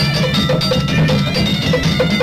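Afro-Cuban carnival percussion ensemble playing: struck metal bells ring in a steady pattern of about four strokes a second over a dense bed of drums.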